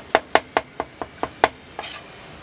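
A kitchen knife chopping mushrooms on a cutting board in rapid, even strokes, about five a second. There is a brief scrape near the end.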